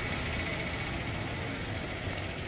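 A motor vehicle engine running, a steady low rumble.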